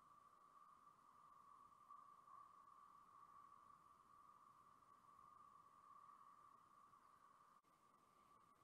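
Near silence, with a faint steady high-pitched hum throughout and one small click near the end.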